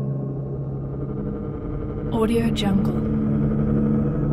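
Ambient background music built on a steady low drone. About two seconds in, a brief voice says the 'AudioJungle' watermark over it.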